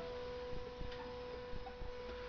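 Faint room tone in a pause of narration: a steady high hum over a light hiss, with a few faint ticks.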